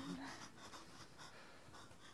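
Faint rustling and soft scratchy handling noise, as of a cloth bag being carried and shifted, just after a held music note fades out at the start.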